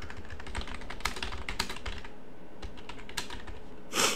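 Typing on a computer keyboard: a run of quick, irregular keystrokes, with a louder brief rush of noise at the very end.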